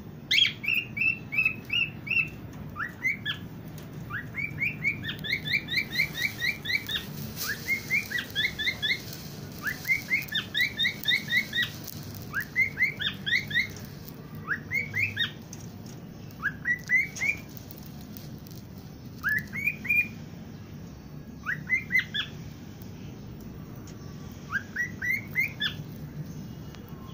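Caged pet parrots chirping: short, rising chirps in quick runs of three to six, repeated every second or two with brief pauses.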